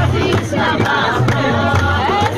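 A group of women singing a Kabyle folk song together in chorus, with hand claps and hand-held frame drums beating along.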